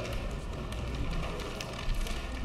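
Paper plan sheets rustling and being handled, with a few light taps over a steady low room hum.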